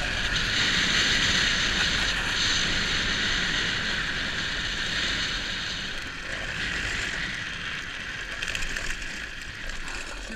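Hard wheels rolling and sliding on asphalt during a downhill run: a steady scraping hiss that fades over the last few seconds, with a few sharp clicks near the end.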